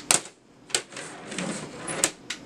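A handboard clacking against a folding tabletop during a flip trick: a few sharp knocks as the board is caught and lands, with fainter scuffing of wheels and hands between them.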